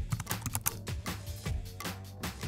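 Computer-keyboard typing sound effect, a quick irregular run of key clicks, over background music with a steady low bass drone.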